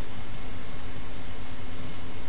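Battery-powered hydraulic crimping tool running steadily, its electric motor and hydraulic pump driving the piston forward.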